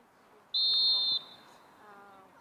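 Referee's whistle: one short, steady, loud blast starting about half a second in, signalling the restart of play from the centre circle.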